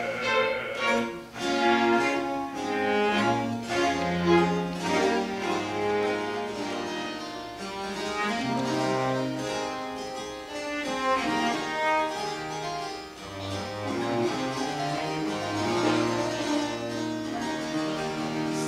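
Baroque chamber ensemble playing an instrumental passage between sung sections: violins and cello over harpsichord, with a plucked lute.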